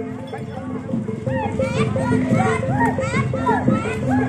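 Children shouting and chattering over the gamelan accompaniment of a barongan procession, which plays short repeated notes at a few fixed pitches.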